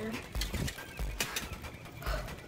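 Footsteps pushing through dense undergrowth on the forest floor: a heavy low thump about every half second, with sharp small clicks between the steps.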